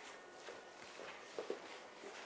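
Faint footsteps of a person walking across a floor, with a couple of soft steps close together about one and a half seconds in.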